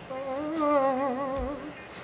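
A voice humming one long held note with a quick, wobbling vibrato, fading out after about a second and a half.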